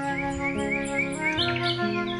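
Instrumental background music with a bird chirping over it in short rising notes, about four a second, then higher chirps near the end.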